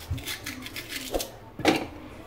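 A knife working a piece of ginger held over a plastic food processor bowl: a run of quick small clicks and scrapes, then a single louder knock near the end.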